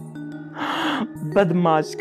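A breathy laugh, a short puff of air about half a second in followed by a brief voiced giggle, over soft background music holding long steady notes.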